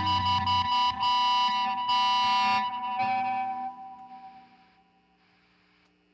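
A rock band's final chords, led by electric guitar, ringing out at the end of a song, then dying away to near silence by about four seconds in.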